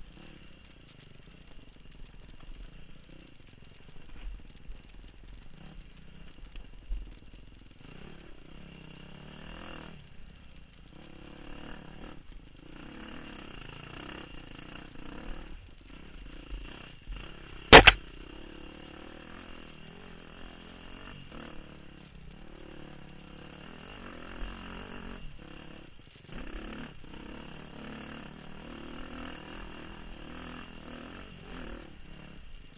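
Dirt bike engine running with revs rising and falling as the bike is ridden over rough trail, with scattered knocks. One sharp, loud knock just past halfway.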